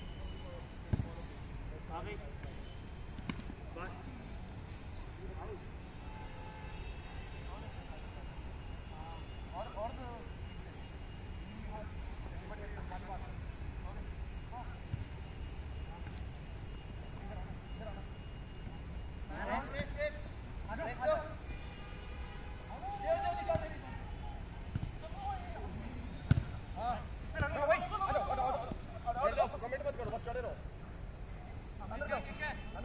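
A football being kicked on artificial turf: a few sharp thuds spread through, the loudest near the end. Players shout to each other in the second half, over a steady low rumble.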